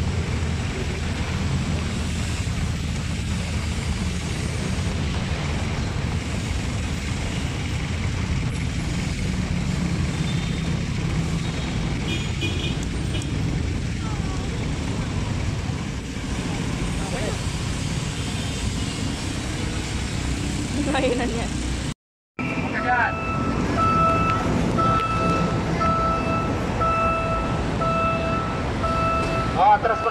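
Low, steady rumble of a PNR train and its diesel running on the station track. After a cut, a railroad crossing's electronic warning signal sounds in evenly repeated beeps over the rumble of road traffic.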